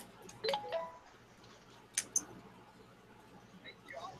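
Faint handling sounds of veneer strips and masking tape on a cutting mat: a few light clicks and taps, one sharper click about two seconds in. About half a second in, a brief stepped tone sounds, like a short electronic chime.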